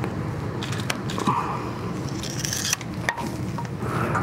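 Hose cutter crunching through a rubber push-on hose, with a few sharp clicks from the cutter's jaws, over a steady noise.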